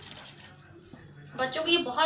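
Faint stirring of rava idli batter with a whisk in a glass bowl, then a woman speaking Hindi from about a second and a half in.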